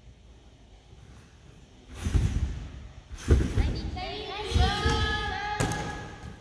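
A gymnast's double front somersault off a trampoline: a heavy thud at take-off about two seconds in, then a louder thud as she lands on the crash mats about a second later. The landing is not stuck.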